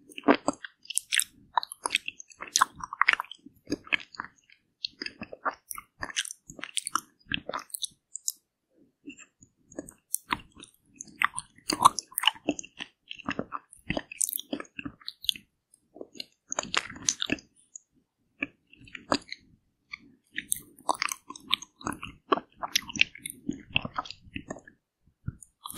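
Close-miked eating of a frozen ice cream bar: sharp, wet, clicking bites and chewing with small crunches, coming in irregular runs with brief pauses about eight seconds in and again around eighteen seconds.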